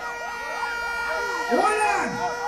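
Sound-system siren effect over the dancehall backing: quick, repeated up-and-down wails over a steady held tone, with one louder, wider wail near the end.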